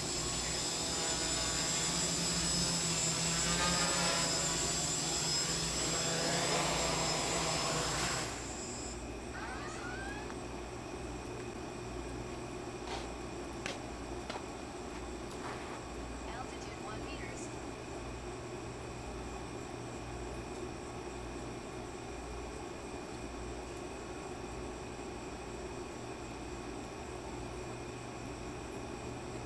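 X525 quadcopter's electric motors and propellers whirring, the pitch shifting up and down as it comes down to land. The whir stops suddenly about eight seconds in as the motors shut off after landing.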